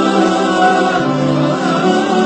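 Slow vocal music: voices singing long held notes, with a lower note coming in about a second in.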